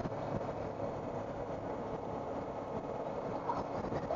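Steady wind and road noise from a Suzuki V-Strom 1000 motorcycle cruising at speed, its V-twin engine running underneath.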